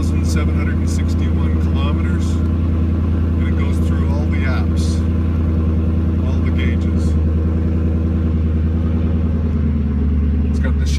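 Ford Mustang GT 5.0-litre V8 with a Roush exhaust idling steadily, heard from inside the cabin.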